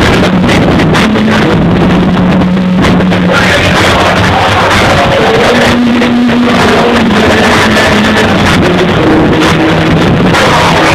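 Loud music with a steady beat and a sustained bass line, played over a club's sound system.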